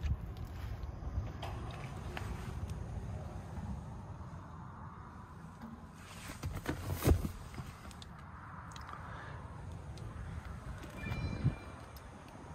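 Faint low background rumble with light handling clicks and one sharp knock about seven seconds in.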